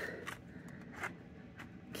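Quiet room tone in a pause between words, with a few faint, short ticks, about a third of a second, one second and a second and a half in.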